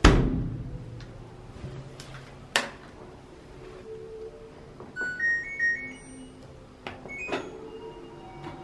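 LG TurboDrum top-loading washing machine being set up: a thump at the start, button clicks, then the control panel's electronic beeps, a short run of tones stepping up and down in pitch about five seconds in, and another click and beep near the end.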